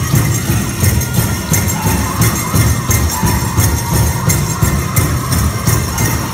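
Powwow drum group: a big drum struck in a steady beat, with high singing voices over it and the jingle of dancers' ankle bells.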